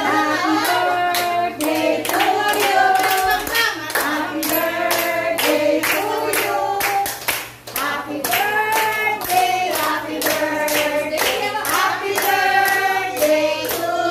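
A group of adults singing a song together and clapping their hands in a steady beat.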